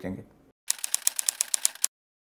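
A quick run of sharp mechanical-sounding clicks, roughly a dozen in just over a second, used as an editing sound effect for the on-screen question card. It stops abruptly.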